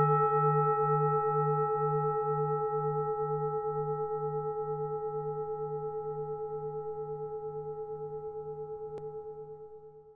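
A singing bowl ringing out after a single strike, slowly dying away, with a low hum that pulses steadily under several higher, clear overtones; it fades out near the end.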